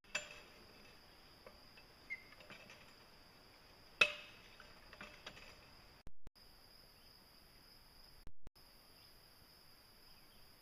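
Cast-iron hand water pump being worked: two loud metallic clanks with a ringing tail, right at the start and about four seconds in, with lighter knocks and clicks between. Insects drone steadily at a high pitch behind it.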